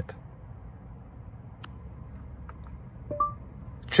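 Quiet car-cabin hum with a few faint clicks, then near the end a short rising two-note electronic chime from the car's infotainment voice assistant, signalling that it is ready to listen.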